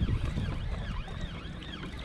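Wind buffeting the microphone of a kayak at sea makes a steady low rumble. Through it runs a faint high sweeping sound that repeats about three times a second.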